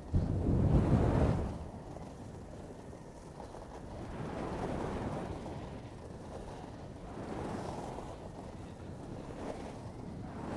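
Wind buffeting the microphone of a camera moving downhill on skis, hardest in the first second or so, then a steadier rush of wind with skis hissing and scraping over packed groomed snow, swelling a little twice.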